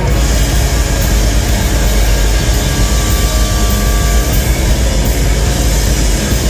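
A rock band playing live and loud: a dense, unbroken wall of distorted electric guitar, bass and drums with a heavy low end.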